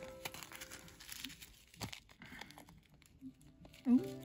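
Small plastic bags of round resin diamond-painting drills crinkling as they are handled and turned, in faint scattered crackles and clicks.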